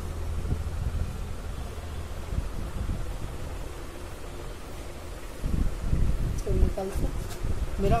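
A low steady hum that fades after the first second or so, then rustling and bumping from the camera being carried. A brief bit of voice comes about six and a half seconds in.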